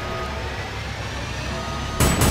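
Low, steady rumble with a faint high tone slowly rising over it: a film trailer's build-up drone.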